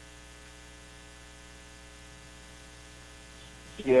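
Steady electrical hum in the recording, low and unchanging, with a man saying a short "yeah" near the end.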